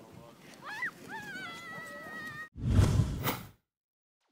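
A child's high-pitched calls out on a sledding hill, ending in one long held note. Then an abrupt cut to a loud outro sound about a second long, the loudest part.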